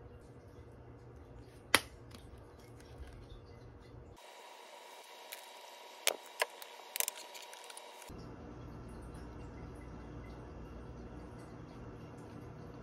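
Plastic squeeze bottle of red chili sauce squirting onto a crab-stick wrap, with a few sharp spluttering spurts around the middle over quiet room noise.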